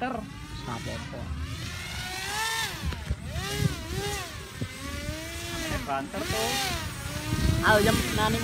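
RC model paramotor's propeller motor whining in flight, its pitch rising and falling again and again in smooth swells as the model passes close. Someone says the motor is coughing. A low rumble of wind on the microphone runs underneath.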